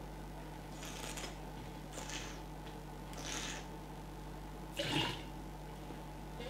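A wine taster drawing air through a mouthful of red wine in four short hissing slurps about a second apart, the last and fullest about five seconds in. This is aerating the wine on the palate during tasting.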